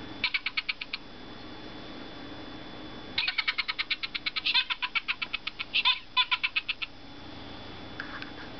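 Stuart Minion plush toy's sound chip playing a high-pitched, rapid giggle through its small speaker, set off by squeezing the toy's hand. A short burst of laughter comes near the start, then a longer run of giggling from about three seconds in to about seven.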